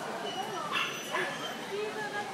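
A dog barks twice in quick succession about a second in, over the chatter of people in the hall.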